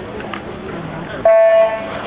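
Electronic swim-meet starting horn giving one loud, steady beep about a second in, held for about half a second: the start signal for a backstroke heat. Murmur of the crowd before it.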